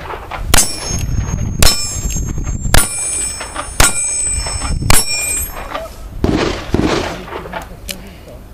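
Five revolver shots about a second apart, each followed by the high metallic ring of a steel target being hit.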